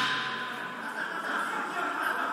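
Indistinct background voices and murmur in a sports hall, a steady wash of sound with no single clear event.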